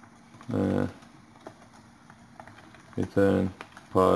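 Typing on a computer keyboard: scattered light keystrokes as a line of code is entered. A voice makes two short sounds, about half a second in and about three seconds in.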